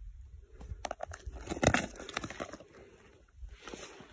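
Irregular crunching and clicking of footsteps on loose stony desert ground, busiest about one to two seconds in.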